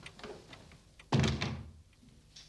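A door shutting with one heavy thud a little over a second in, after a few light clicks.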